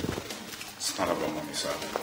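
A man's voice, a brief low utterance about a second in, between lines of dialogue.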